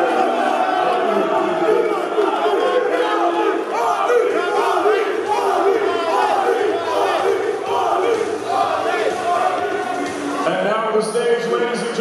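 A large crowd shouting and yelling, many voices at once, at a steady loud level.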